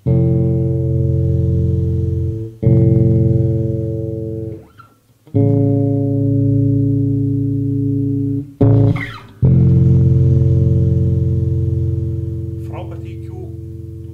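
Spector NS-4 electric bass with two EMG pickups, played through an Ampeg amplifier: five struck notes, each left to ring and die away, the last one fading slowly.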